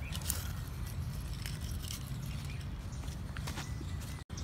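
Faint soft rustling of hands sowing seeds in garden soil, over a steady low background rumble.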